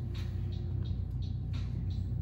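Steady low hum, with a thin steady tone for about the first second and faint short high-pitched chirps recurring a few times a second.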